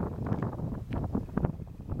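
Wind buffeting the microphone: an uneven, gusty low rumble.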